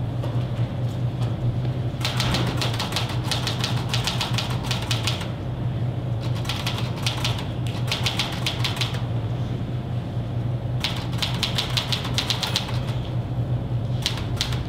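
Rapid typing on a keyboard, keys clicking in three bursts of a few seconds each, with a steady low hum underneath.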